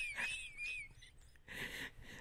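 A woman's high-pitched, wheezy laugh trailing off in the first second, followed by a short breath near the end.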